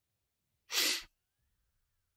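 A person's single short, sharp burst of breath close to the microphone, under half a second long, about a second in.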